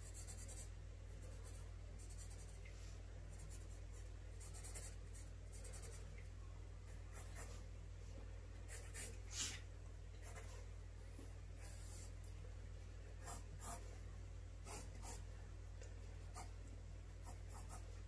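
Graphite pencil scratching across sketchbook paper in short, irregular strokes, with quick runs of strokes around the middle and near the end, over a faint steady low hum.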